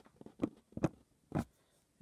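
Handling noise: three short knocks and rubs, about half a second apart, as plastic disc cases are pushed straight in a stack, with a few fainter clicks before them.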